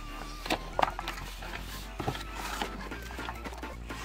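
Faint background music with a steady low hum, broken by a few light knocks as the moulded pulp tray and sand block of a fossil excavation kit are handled.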